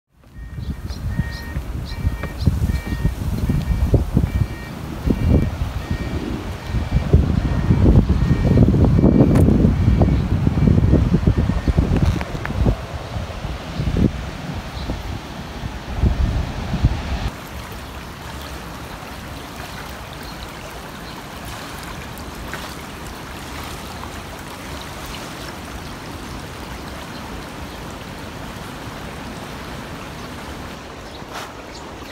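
Wind buffeting the microphone in heavy gusts for the first half, then a steady rush of a fast-flowing, rain-swollen river. A faint high two-note tone repeats regularly during the first ten seconds or so.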